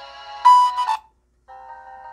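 Music played through a home-built speaker under test, with a budget dome tweeter fitted. The music stops abruptly about a second in, and after a short silence a new track starts with sustained notes.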